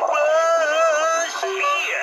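A 'That's Bullshit' novelty sound button playing one of its recorded clips, a sung voice phrase, through its small built-in speaker; thin and without bass.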